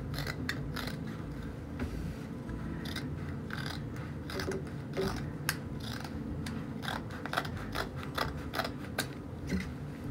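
Scissors snipping through heavy grain-sack canvas, trimming the excess fabric off a sewn seam: a string of short, irregular cuts.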